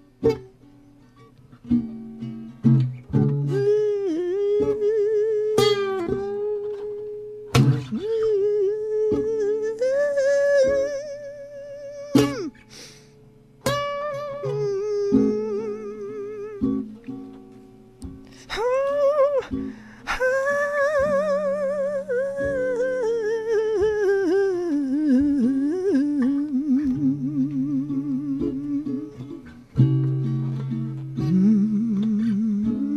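A man's voice singing without words: long held, wavering notes with a wide vibrato and slides in pitch, over sparse plucked guitar notes and chords.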